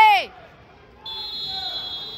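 A shouted word ends right at the start; about a second in, a steady high electronic buzzer tone sounds and holds for over a second. It is typical of a wrestling match timer signalling the end of a period.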